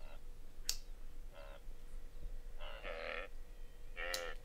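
A wildebeest herd calling, with three bleating, grunting calls. The last call, near the end, is the longest and loudest. A sharp click comes just under a second in.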